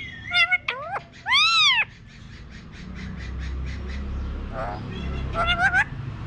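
Alexandrine parakeet calling: short squawks and two rising squeals, then one loud arching screech about a second and a half in. A run of quick soft ticks follows for about two seconds, and a few short calls come near the end.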